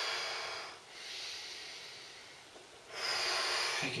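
A man's slow, deep paced breathing, without speech. An exhale trails off in the first second, a quieter inhale follows, and a louder breath comes near the end.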